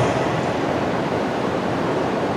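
Steady, even hiss of room tone in a lecture hall, with no other sound standing out.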